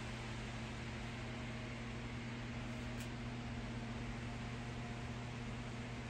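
Electric fans running steadily: a constant rush of moving air with a low, even motor hum.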